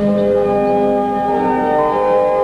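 Romsey Abbey's pipe organ playing held chords. The deep bass drops out at the start, and the upper notes step higher in the second half.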